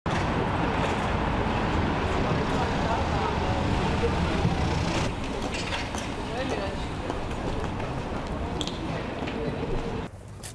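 Street ambience: steady traffic noise with indistinct voices of passersby. The level drops a step about halfway through.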